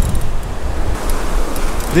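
Ocean surf washing up the beach, swelling about a second in, with wind rumbling on the microphone.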